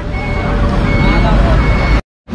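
A vehicle's electronic reversing beeper sounding a short beep of one pitch about twice a second, over the low rumble of engines and street traffic.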